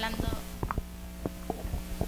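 Handling noise on a handheld wired microphone as it is lowered and passed along: a handful of dull thumps and rubs spread through the two seconds, over a steady low electrical hum.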